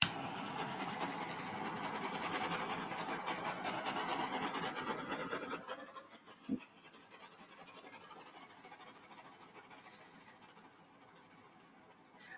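Small handheld butane torch lit with a click, its flame hissing steadily for about six seconds and then shut off, with one short click shortly after. The flame is played over a wet acrylic pour to pop air bubbles in the paint.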